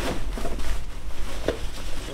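Handling noise from a pushchair being assembled: fabric rustling and a few light knocks of its frame and fittings, the clearest about one and a half seconds in, over a low steady hum.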